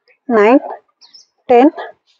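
A woman counting exercise repetitions aloud in a steady rhythm, one number about every second.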